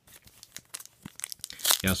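Plastic trading card pack wrapper crinkling and tearing as it is handled and opened by hand: scattered crackles that grow louder toward the end.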